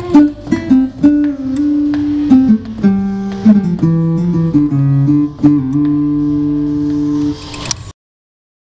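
Yamaha CLP 535 digital piano playing a guitar-like plucked-string voice, chords and single notes with several notes bent in pitch by the MIDI controller's wheel. The playing stops near the end, with a short noisy burst just before it falls silent.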